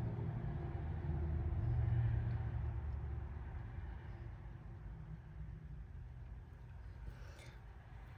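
A low engine rumble that swells about two seconds in and then slowly fades away.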